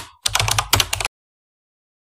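Keyboard-typing sound effect: a fast run of key clicks, about ten a second, stopping suddenly about halfway through.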